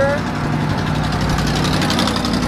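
A motor running steadily at idle, a low even hum that holds one pitch.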